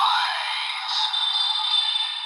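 DX Dooms Geats Raise Buckle toy playing its electronic sound effect through its built-in speaker: thin, bass-less synthesized music and voice with a rising sweep at the start, settling into a sustained high chiming tone.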